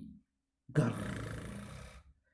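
A man's voice growling a rough, drawn-out 'grrr', acting out a crocodile's growl. It starts a little under a second in, loudest at the start, and fades away over about a second.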